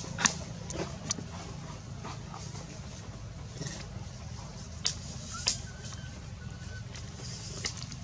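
Outdoor background with a steady low hum and a few sharp, separate clicks and ticks, two close together near the start and two more past the middle. A faint, thin high note sounds briefly a little after the middle.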